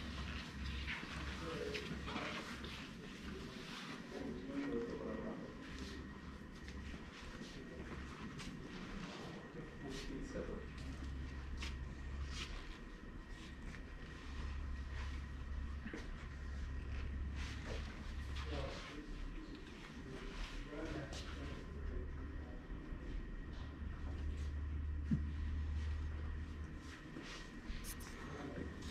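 Faint, indistinct voices of people talking in the background, over a low steady hum, with scattered small clicks and knocks.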